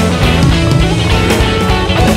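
A rock band playing a passage without singing, with guitar over a steady drum beat.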